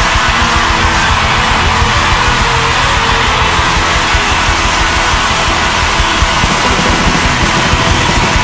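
Loud live rock band music, a steady dense wash of sound with a constant low bass and no sung words picked out.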